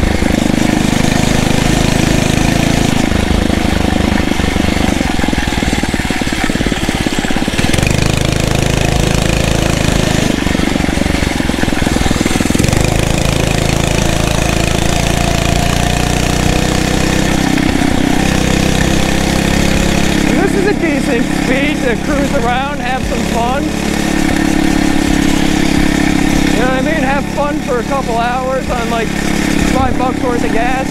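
Phatmoto Rover's 79cc four-stroke single-cylinder engine running under way on the motorized bicycle, its note shifting now and then with the throttle.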